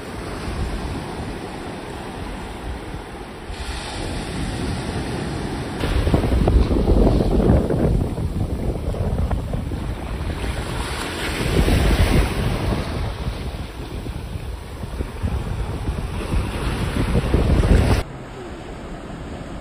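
Small sea waves breaking and washing up on a sandy shore, with wind buffeting the microphone. The surf swells louder about six seconds in, again around twelve seconds, and near the end.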